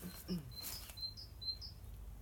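A small bird chirping: several short, high chirps in quick succession over a steady low background rumble, with a brief rustle in the middle.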